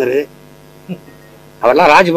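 A man speaking into press microphones in short phrases: a phrase ends just after the start, a pause of over a second follows, and he speaks again near the end. A steady low electrical hum is heard under the pause.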